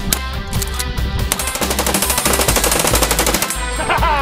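Full-automatic gunfire from a submachine gun: one long rapid burst of many shots a second, starting about a second and a half in and stopping abruptly near the end. It plays over rock music with electric guitar.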